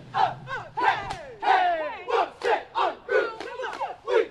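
A cheerleading squad shouting a cheer in unison: short, loud chanted words in a steady rhythm, about three a second.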